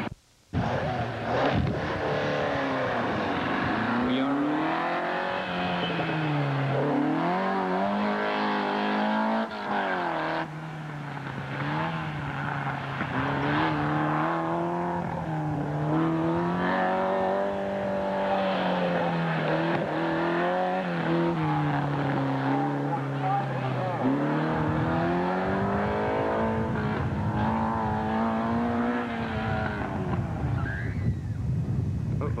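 A car engine revving hard and then easing off, over and over, as the car is driven through an autocross cone course. Its pitch climbs with each burst of acceleration and falls on each lift. The sound cuts out briefly right at the start.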